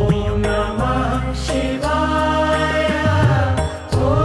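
Indian devotional background music: a chanted mantra sung in long held phrases over a steady low drone.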